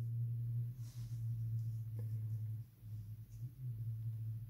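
A steady low hum, with a faint tick about two seconds in.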